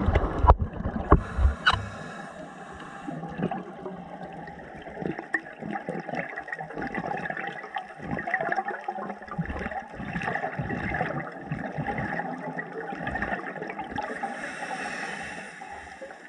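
Scuba diver's breathing heard underwater: a burst of exhaled bubbles gurgling in the first two seconds, then a long stretch of softer watery bubbling, and a high hiss near the end.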